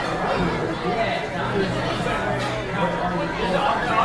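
Indistinct chatter of many voices in a busy restaurant dining room, with a steady low hum underneath.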